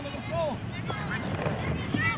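Indistinct shouts and calls from people around a football pitch, one clear call about half a second in, over steady outdoor background noise.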